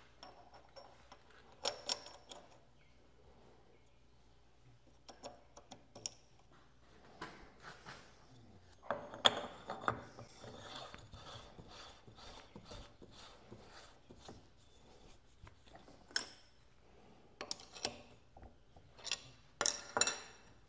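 Scattered light metallic clicks, taps and scraping as a cam ring, toothed pulley and handwheel are fitted by hand onto a cam relieving fixture on a tool and cutter grinder workhead, busiest about halfway through.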